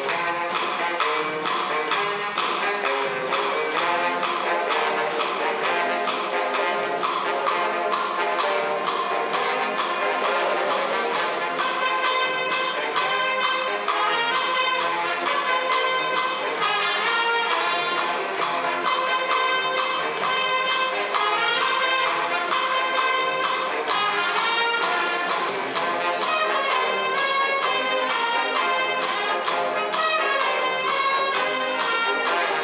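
Small brass band of saxophones, trumpet, trombone and tubas playing a lively tune live, with a steady beat running under the horns.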